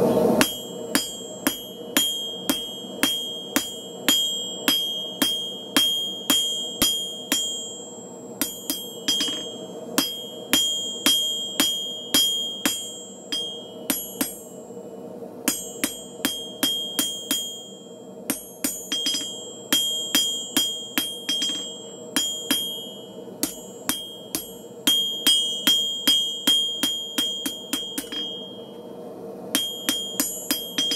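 Blacksmith's hammer striking a hot steel bar on an anvil in steady blows, about two and a half a second, each with a high ringing from the anvil. The blows come in runs with short pauses between, as the bar is drawn out longer and thinner.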